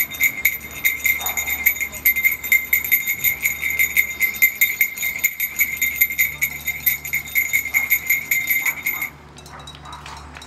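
A bell rung rapidly, one steady high ring struck several times a second, which stops suddenly about nine seconds in.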